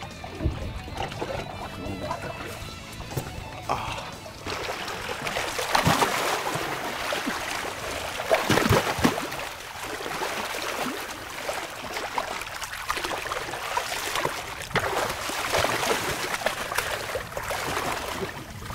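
Background music, then from about four seconds in, loud splashing and churning of water as a shark thrashes at the surface beside the boat, with sharp slaps of water at its loudest moments.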